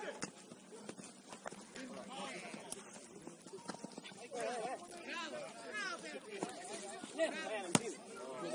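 Players and coaches shouting and calling out across a football pitch, the voices distant and overlapping. Several sharp knocks of a football being kicked, the loudest just before the end.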